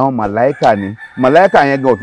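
A man speaking loudly, with a rooster crowing in the background: a thin, steady, high call that starts about half a second in and carries on past the end.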